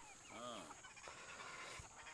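A single faint farm-animal call, rising and falling in pitch, about half a second in, over a quiet background.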